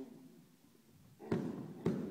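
Two sharp strikes landing on a coach's Muay Thai pads, about half a second apart in the second half, each with a short echo.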